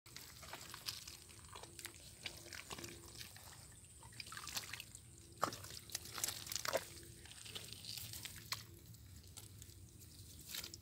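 Water dripping and splashing in small, irregular drops and pats as a wet fishing net is handled in shallow water, with scattered sharp clicks; the loudest click comes about halfway through.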